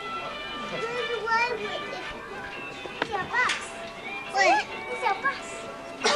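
Children's high-pitched voices calling out and chattering, loudest in short bursts about three and a half and four and a half seconds in, over faint background music with steady held notes.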